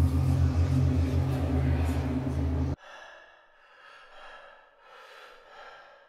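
A loud glitch-style sound effect, a deep steady hum under a hiss, that cuts off suddenly about three seconds in. A man's soft, shaky gasps and breaths follow.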